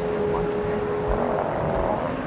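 Wildlife-tour boat's engine running steadily at low speed, with water and wind noise and a held tone for the first second or so.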